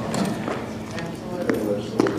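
Footsteps on a hard floor, sharp evenly spaced steps about two a second, with low talk in the room behind them.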